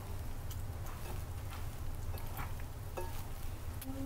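Faint wet squishing and light clicks of a hand tossing cauliflower florets in thick batter in a bowl, over a steady low hum.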